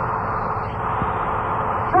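Steady engine and road noise of a running tour bus, heard through a muffled, lo-fi cassette recording; a man's voice starts right at the end.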